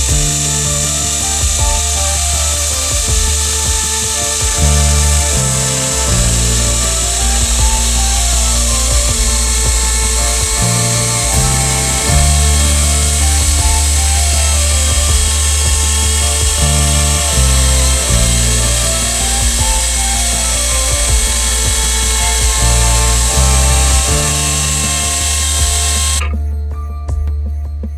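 Electric chainsaw on a portable chainsaw mill running steadily as it saws a dry oak log on automatic feed, mixed with background music. The saw sound stops abruptly at the very end.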